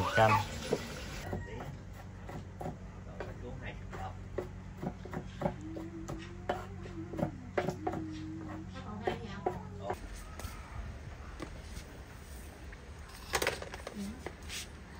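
Kitchen knife chopping on a wooden chopping block: irregular knocks a few a second, under a low steady hum. A louder sharp knock comes near the end.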